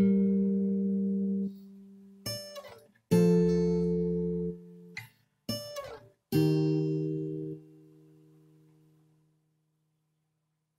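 Acoustic guitar played fingerstyle: three chords plucked about three seconds apart, each left to ring. Short sliding notes glide down the neck between them, and the last chord rings out and fades away.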